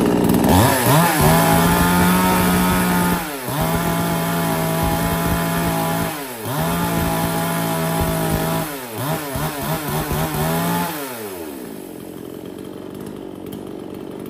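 Kamasu KM7003 54 cc two-stroke chainsaw, brand new, revved hard four times with the throttle, each burst held for two or three seconds before dropping back. After about eleven seconds it settles to a quieter, steady idle, running crisp.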